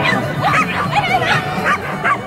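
A dog barking in a rapid string of short, high yips, about four or five a second.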